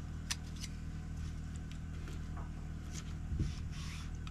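A knife and fork on a plate as steak is cut: a sharp click about a third of a second in and a fainter one just after, over a steady low hum. A short low vocal murmur near the end.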